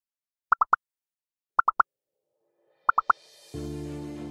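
Quiz-show interface sound effect: three quick rising blips in a row, heard three times about a second apart as answer choices appear. About three and a half seconds in, steady background music with low sustained tones begins.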